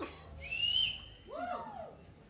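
A person whistling from the crowd between songs: a short whistle that glides up and then holds, about half a second in, followed about a second later by a lower sound that rises and falls.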